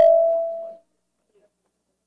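A single held musical note dies away within the first second, then near silence.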